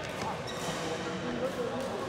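Badminton hall sound: players' voices with the squeak and patter of court shoes on the floor and a few faint knocks.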